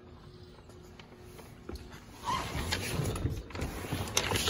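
Quiet room tone, then from about two seconds in, irregular rustling and soft knocks of someone shifting and handling things in a pickup truck's cab.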